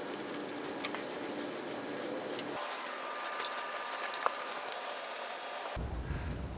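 Quiet room tone with a few light clicks as cable connectors are handled and fitted into the front sockets of a TIG welder.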